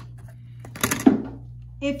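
A short clatter about a second in as a clear acrylic quilting ruler and marking pen are set down on the table, with a small click just before, over a steady low hum.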